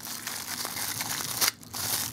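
Thin plastic wrapping crinkling and tearing as it is pulled open by hand, with a short break about one and a half seconds in.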